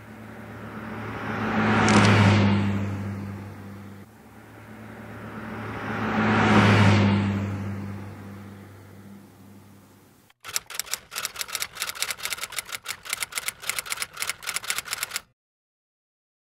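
Two long swells of rushing noise over a steady low hum, each rising and fading over a few seconds, then about five seconds of rapid typewriter key clicks, a typing sound effect that stops abruptly.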